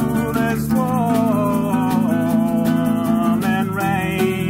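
Small band playing an instrumental passage: strummed acoustic guitar and bass chords, with a wavering lead guitar melody coming in about a second in, over light percussion keeping a steady beat.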